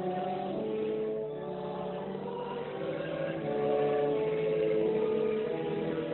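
Congregation singing a hymn together in slow, long-held notes, swelling a little louder midway.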